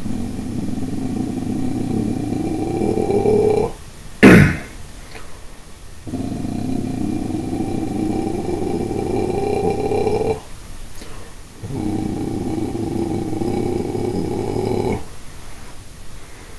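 A voice sustaining three long, low, rasping growled notes (vocal fry), each held three to four seconds, with the vowel resonance slowly rising through each note. A single sharp, loud pop comes about four seconds in, between the first and second notes.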